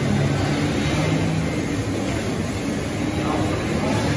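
Steady machinery drone of a food-processing hall, with its conveyor lines running: an even noise over a low hum.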